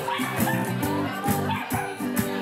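Background music with a steady beat, and a dog barking over it.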